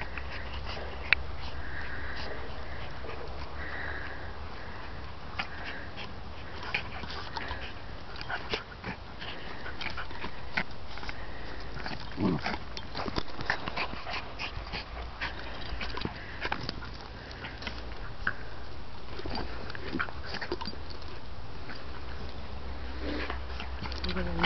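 Two dogs, a Border Collie and a Bichonpoo, play-fighting: close snuffling and breathing with many short mouthing clicks and scuffles, and one short call about twelve seconds in.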